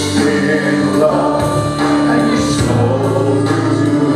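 Live church worship team of several singers with a band, singing a slow praise song in sustained, held phrases.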